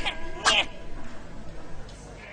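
A short, high-pitched vocal cry from an animated character about half a second in, right after a sharp burst at the start, then a quiet stretch.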